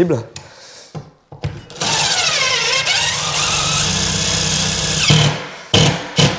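DeWalt DCF887 18 V cordless impact driver driving a double-thread plasterboard screw through a metal rail into dense, high-strength plasterboard, running for about three seconds with its whine dropping, then rising again as the screw bites. The screw goes in hard because the board is so tough.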